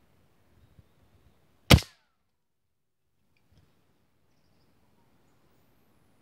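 A single gunshot about two seconds in: one sharp crack with a short fading tail. A few faint small clicks come just before it.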